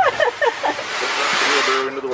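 A person's voice with a loud, steady hiss of noise under it; the hiss cuts off near the end.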